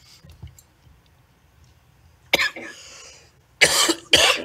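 A person coughing: a sudden cough a little past halfway, then a louder one near the end.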